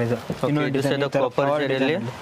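A man talking in short phrases, with a low, fairly level voice and brief pauses between phrases.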